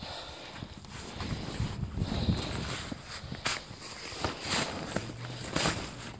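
Footsteps on snow-covered lake ice, an uneven series of steps.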